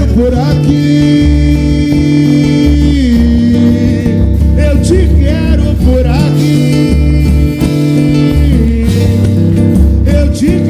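Live samba: guitar and percussion playing, with voices singing along in long held notes, the first one stepping down in pitch about three seconds in.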